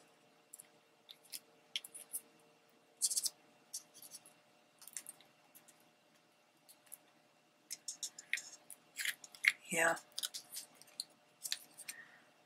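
Paper and cardstock pieces rustling and ticking as they are handled and pressed into place, in short scattered bursts that grow busier toward the end, with a brief vocal sound a little before ten seconds in.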